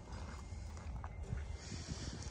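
Faint sounds of a horse standing close by, over a steady low rumble, with a few small clicks and a short hiss near the end.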